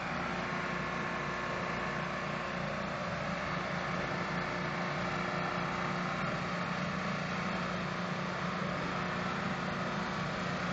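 Pressure washer's engine running steadily under load, with the hiss of water jetting from a rotary flat-surface cleaner onto concrete.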